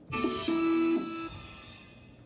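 Short intro music sting from a played-back video, heard over a room's speakers: a few notes strike together just after the start, hold for about a second, then die away.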